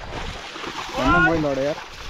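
A man's drawn-out call to his plough team, rising then falling, about a second in, over splashing and sloshing of the ox team and plough in the flooded paddy mud.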